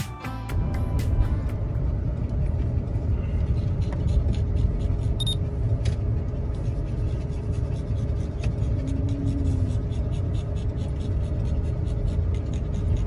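Background music fades out about a second in. After that comes the steady low rumble of a campervan driving, heard from inside the cabin.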